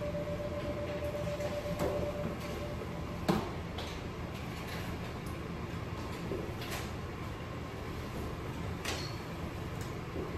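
Steady operating-room background hum with a few sharp clicks and knocks as supplies are handled at the back table, the loudest about three seconds in. A faint steady tone stops about three seconds in.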